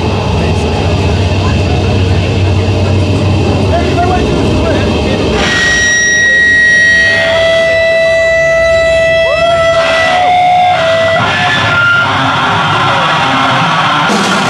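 Amplified band noise between songs: a low, rumbling drone for about five seconds, then sustained whining feedback tones that hold, step and briefly bend in pitch until about twelve seconds in.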